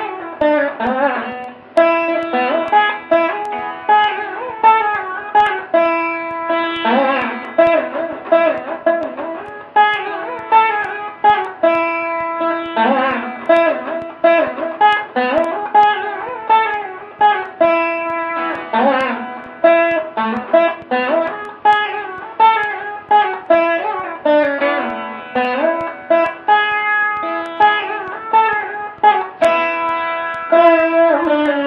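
Solo plucked string instrument playing a Carnatic-style melody, with roughly one plucked note a second and pitch slides and bends between the notes.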